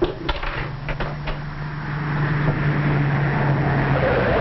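A car engine running and growing louder as the car approaches, heard on an old, muffled film soundtrack. A few sharp knocks come in the first second or so.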